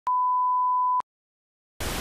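An electronic test-tone beep, a single steady high pure tone lasting about a second. It stops abruptly, and after a brief silence a hiss of TV-style static starts near the end.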